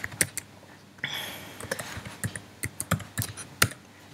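Computer keyboard keys clicking in an irregular run as a word is typed.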